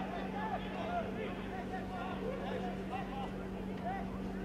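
Faint, scattered shouts of football players calling to each other across the pitch, over a steady low hum.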